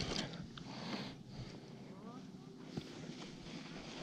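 Quiet outdoor background hiss with a few faint clicks and one sharper click near the three-second mark; a faint distant voice comes through about two seconds in.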